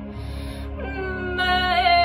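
A woman singing a wordless, wailing held note in a lament style: the voice slides up into the note about a second in, wavers briefly and then slowly falls, over a steady low drone.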